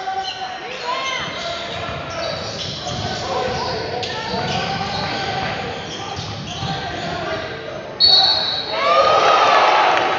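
Indoor basketball game: a ball bouncing on the hardwood court, sneakers squeaking, and spectators talking and calling out. About eight seconds in there is a sudden loud rise of shouting and cheering.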